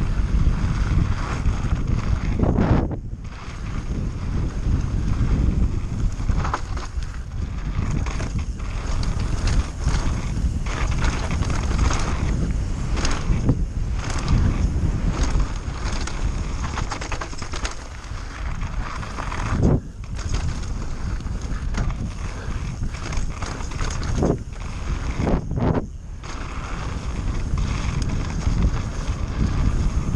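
Giant Reign mountain bike descending a wet, rocky dirt trail: tyres rumbling over dirt and gravel, wind on the microphone, and constant knocks and rattles from the bike over the bumps, with a few brief lulls.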